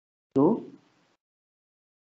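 A man saying one short word, "so", with falling pitch, followed by dead silence.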